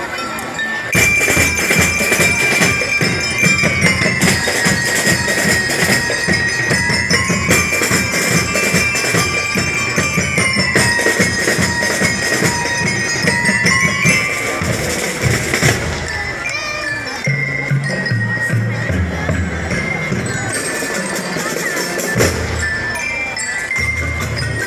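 A school drum and lyre band playing: snare and bass drums under a ringing bell-lyre melody, coming in loudly about a second in.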